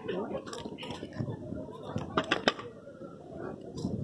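Faint background voices with a few short, sharp clicks and clinks, several of them close together a little after the middle.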